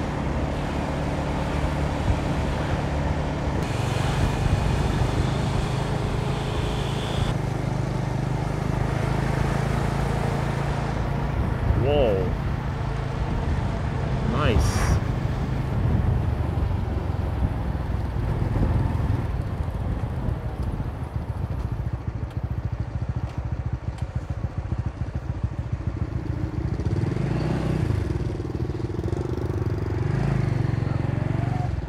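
Motorbike engine running steadily while riding, with road and wind noise, and a couple of short pitched sounds near the middle.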